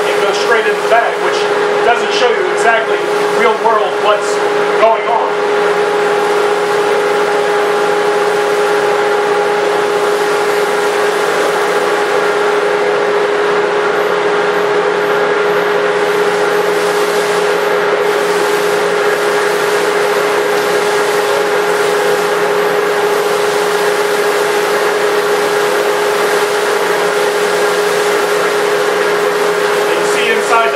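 1.5 HP Penn State Industries two-stage dust collector running with a steady whine and a rush of air through the hose. For the first few seconds, sawdust is sucked up the nozzle with an irregular crackle; after that, only the steady run of the motor and impeller continues.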